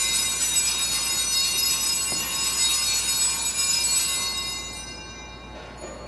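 Altar bells (Sanctus bells) rung at the elevation of the host during the consecration. There is a steady, bright, high ringing that dies away about five seconds in.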